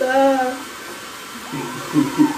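Brief voice sounds over a steady whirring background noise.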